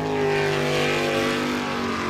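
Jet sprint boat's engine running hard at high revs as it speeds through the course, a steady engine note whose pitch eases down slightly.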